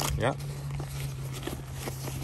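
A hand rummaging through a fabric backpack pocket and handling a zippered pouch: light rustling and small irregular knocks. A steady low hum runs underneath.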